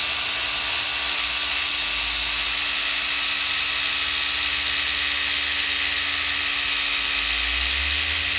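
Rupes Nano mini polisher running steadily in rotary mode at speed 3, its small yellow foam pad spinning with primer polish against piano-black plastic trim: a steady high whine.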